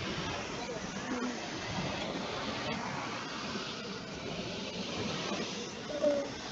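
Faint, indistinct speech under a steady hiss.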